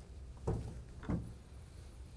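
Two soft, brief handling sounds, about half a second and just over a second in, as the just-detached metal parent push handle of a child's trike is moved and set aside.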